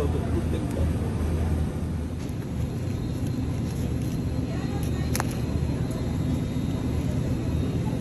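Steady low rumble of supermarket background noise, with a single sharp click about five seconds in.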